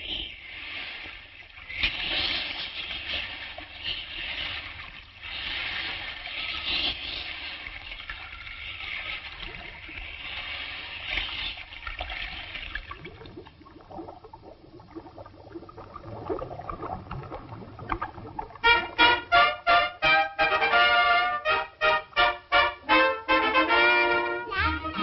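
A rushing-water sound effect over orchestral music, until it fades about 13 seconds in. The music carries on quietly, then breaks into a loud, lively tune with an even pulsing beat about 18 seconds in.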